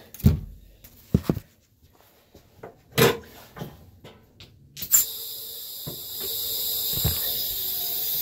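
Several clunks and knocks of handling in the first five seconds; then, after a click about five seconds in, a steady hiss of compressed air starts and keeps going.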